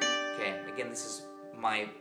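Gypsy jazz acoustic guitar, several plucked notes ringing on together and slowly fading, with a few quieter notes picked in the middle.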